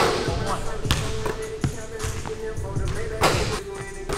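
A basketball bouncing sharply on a hardwood gym floor several times, with music with vocals playing over it.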